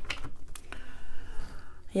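Tarot cards handled on a tabletop: a few light clicks and taps in the first half-second as a card is laid into the spread and the deck is handled, then softer handling.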